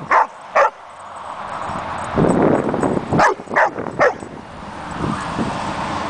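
A dog barking in play: two sharp barks in the first second, then a run of three barks about three seconds in.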